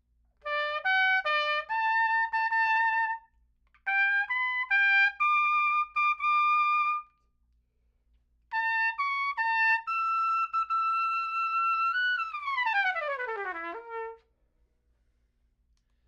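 Adams piccolo trumpet played solo in three short phrases of high, clear notes with pauses between. The last phrase ends on a long held note that falls away in a quick downward run to a short low note.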